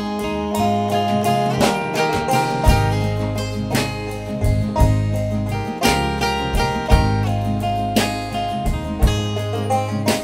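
Instrumental break in a folk song: acoustic guitar and banjo playing together, a steady run of plucked notes over low, sustained bass notes.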